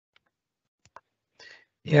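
Near silence, broken by two faint short clicks just before a second in and a brief soft hiss, before a man's voice says "yeah" near the end.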